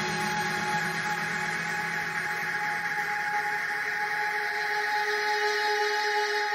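Beatless breakdown of a melodic techno track: sustained synth pads and drones with no kick drum. The bass thins out and is gone by the end.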